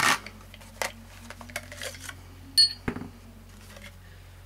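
Light clicks and taps of a clear plastic barrel tube and pistol parts being handled and set down, with one sharper clack that rings briefly about two and a half seconds in, followed by a smaller knock.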